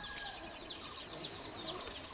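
Birds chirping faintly: a quick, steady run of short, high chirps, about four or five a second, over a soft background hiss.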